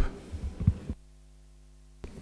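A few soft low thumps in the first second, then a steady electrical hum made of several evenly spaced tones.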